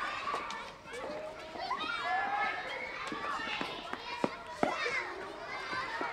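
A schoolyard full of children shouting, calling and chattering as they run and play, many high voices overlapping. Two short sharp clicks stand out a little past the middle.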